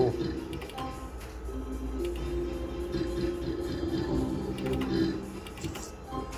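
Book of Ra Deluxe slot machine playing its electronic free-spin game music and reel sounds as two free games spin and stop, with a few short clicks.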